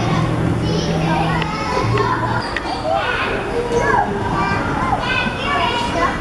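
Young children playing and calling out, their high voices rising and falling in short bursts of chatter and squeals, over steady low background tones.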